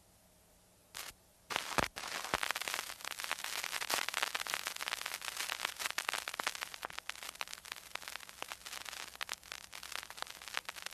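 Dense crackling and popping noise, like static or the surface crackle of a record. It starts with a few isolated pops about a second in and becomes a continuous run of clicks from about two seconds in.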